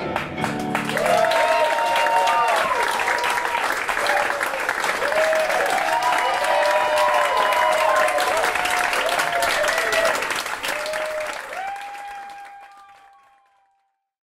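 Theatre audience applauding and cheering with whoops as a song ends, the applause fading away over the last few seconds.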